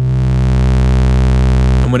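Livewire AFG analogue oscillator's triangle wave mixed with a square sub-wave through the Erica Synths Fusion Tube VCO Mixer's valve stage: a steady, buzzy synth tone held at one pitch. A deeper tone from the sub-wave comes in right at the start.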